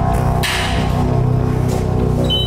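Background music: a sustained low, steady drone, with a brief hiss about half a second in.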